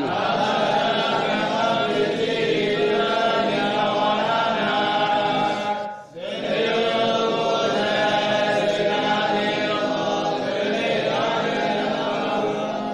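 Several voices chanting Pali text together in unison, a steady rhythmic recitation, with a brief breath pause about halfway through.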